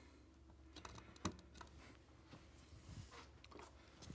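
Near silence, with a few faint taps and clicks from a clear bowl of floral foam being handled and settled on top of a glass vase.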